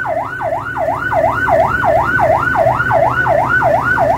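A yelp-type siren wailing rapidly up and down, about three and a half sweeps a second, over a low engine rumble.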